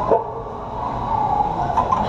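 Steady background noise of a busy gym, with a short knock right at the start.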